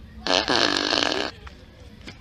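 A fart noise starting about a quarter of a second in and lasting about a second, pitched and wavering, played as a prank.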